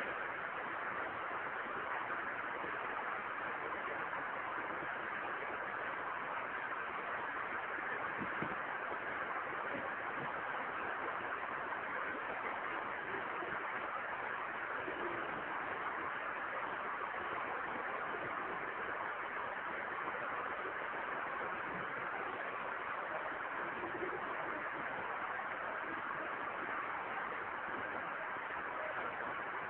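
A steady, even hiss of recording background noise, with no speech.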